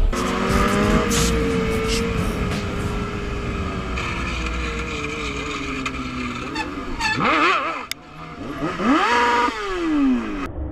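Motorcycle engine whose pitch falls slowly for several seconds as it rolls off the throttle. About seven seconds in come a few quick throttle blips, then a short lull, then a rev that climbs sharply and falls away near the end.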